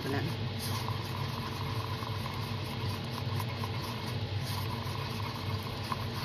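Epoxy resin being stirred in a plastic cup: soft, uneven swishing and scraping over a constant low hum.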